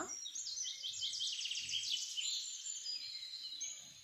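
A bird sings a rapid series of high chirps and trills in the background, with faint soft knocks from a steel spoon mashing boiled potato in a glass bowl.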